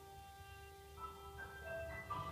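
Quiet classical chamber music from strings and piano: soft held notes, with new notes coming in about a second in.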